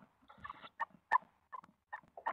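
Tawny owl chicks giving short squeaky begging calls, about three a second, while being fed in the nest box, with a brief rustle of movement about half a second in.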